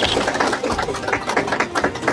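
A small crowd clapping: a dense, irregular run of sharp hand claps.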